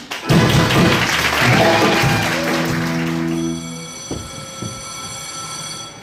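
Audience applause as a song number ends, over the backing track's final held chord. After about three seconds the applause falls away and the music leaves a steady sustained tone.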